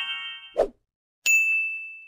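Edited sound effects for a subscribe-button animation: a ringing chime fading out, a brief pop about half a second in, then a click and a single high bell ding that rings out and fades.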